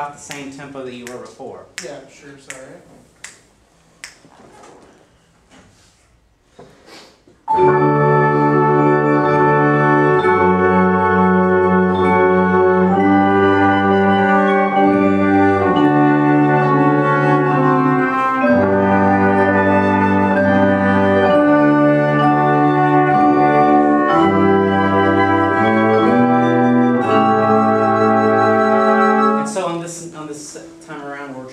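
Small instrumental ensemble playing slow, sustained legato chords that move every second or two. The chords begin about seven seconds in, after a quiet stretch of faint knocks, and cut off just before the end.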